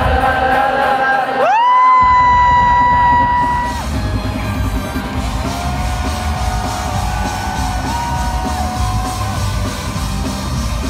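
Live concert music heard close up: a loud voice swoops up into a long held high note, then holds lower notes, over the band's bass and drums, with yelling. The bass drops out briefly about a second and a half in.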